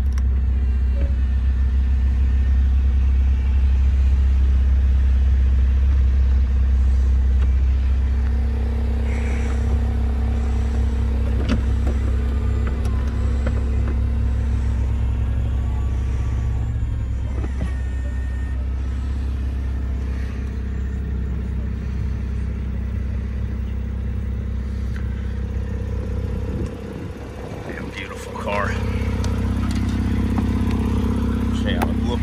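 A Porsche 911 Targa 4 GTS's twin-turbo flat-six idles steadily while the electric Targa roof mechanism runs through its cycle. The mechanism adds a whirring with fast ticking and faint whines for roughly ten seconds in the middle.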